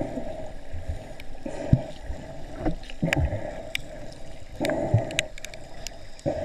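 Underwater sound picked up by a camera in a waterproof housing: muffled, uneven water noise that swells and fades, with low thumps and scattered sharp clicks.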